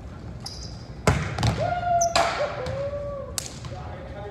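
Volleyball struck by hands about four times, sharp slaps ringing in a large gymnasium, the loudest about a second in. Short squeals sound between the hits.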